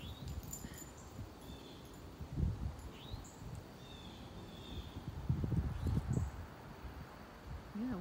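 Outdoor ambience with a few short, faint bird chirps, and low rumbles on the microphone about two and a half seconds in and again around five to six seconds in.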